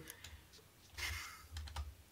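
Faint typing on a computer keyboard, loudest about a second in.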